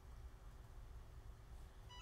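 Near silence: a steady low room hum. At the very end, a short electronic chime of a few clear notes begins from the Cricut EasyPress 2, signalling that it has reached its set temperature.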